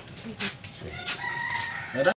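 A rooster crowing, its drawn-out note coming a little over a second in, with a short knock just before.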